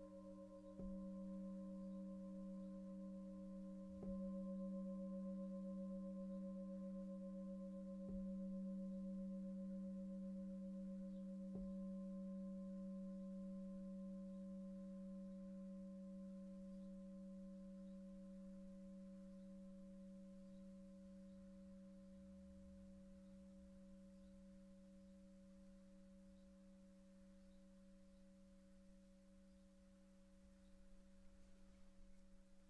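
A singing bowl struck four times, a few seconds apart, ringing with a low, steady hum and a slight wobble, then left to fade slowly.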